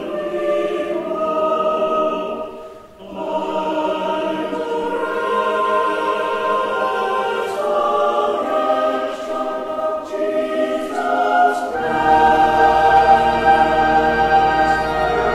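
Church choir singing in sustained, held chords, with a brief break for breath about three seconds in. Low bass notes come in about twelve seconds in beneath the voices.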